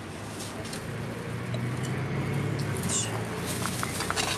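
A plastic bag rustling and crinkling as it is handled, heard as light scattered clicks over a steady low hum.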